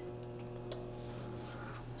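Toshiba microwave oven just started and running with a steady electrical hum. A faint click sounds about three-quarters of a second in.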